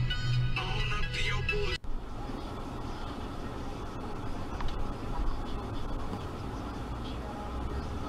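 Music that cuts off abruptly about two seconds in, followed by steady road and engine noise from inside a moving car as picked up by a dashcam.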